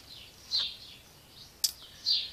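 A small bird chirping during a pause in the singing: short calls that fall in pitch, with one sharp click about three-quarters of the way through.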